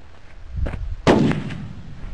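A single gunshot at a target about seventy yards off, about a second in, its report trailing away in echo. A fainter sharp crack comes shortly before it.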